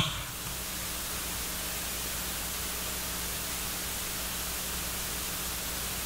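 Steady hiss with a faint electrical hum: the background noise of the room and sound system, with no other sound.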